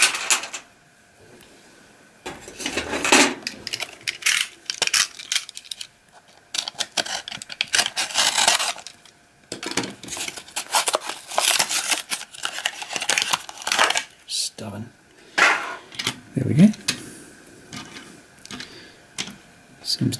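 Irregular bursts of rustling, crinkling and hard plastic clicking as a diecast Matchbox toy truck is forced out of its packaging by hand.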